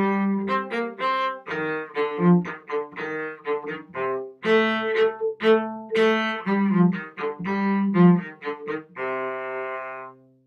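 Solo cello playing a short melody in separately bowed notes, ending on a held note in the last second. It is a student piece played with left-hand extensions that the piece does not normally call for, which shift some of its notes.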